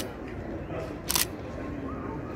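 A short, sharp click about a second in, over steady outdoor background noise.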